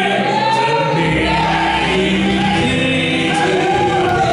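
Men's trio singing a gospel song in close harmony with instrumental accompaniment; a low bass comes in about a second in.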